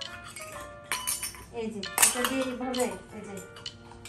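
Small stainless-steel toy pots, bowls and plates clinking and ringing as they are handled, with sharp clinks about one second and two seconds in.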